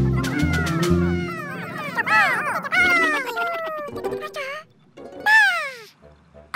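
A music cue with a steady bass beat ends about a second in. A string of high, squeaky cartoon creature calls follows, swooping up and down in pitch. The loudest, a long falling call, comes near the end.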